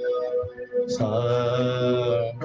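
A steady sustained note, likely from a keyboard, sounds throughout. About a second in a low male voice joins it, singing the sargam syllable 'sa' as one long held note, the tonic of a practice phrase.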